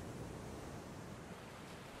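Faint, steady rushing background noise with no distinct events.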